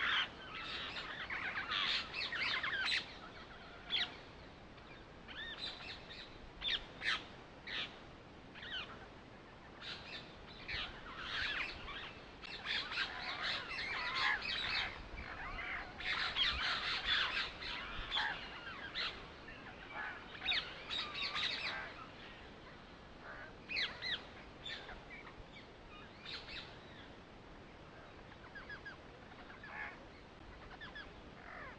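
Birds chirping: many short, quick calls in busy clusters, thinning out in the last few seconds.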